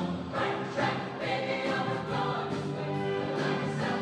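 Mixed high-school show choir singing held chords in full harmony over instrumental accompaniment, the chords changing about once a second.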